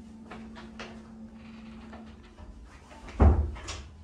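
A single heavy thump about three seconds in, followed by a sharp click, over light clicks and rustles of handling.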